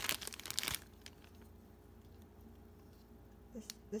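Clear plastic toy bag crinkling and tearing as it is opened by hand, a burst of crackly noise lasting under a second.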